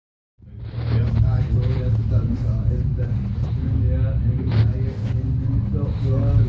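Voices talking over a loud, steady low rumble.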